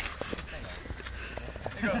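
Running footsteps: a few light, uneven knocks over a steady low rumble.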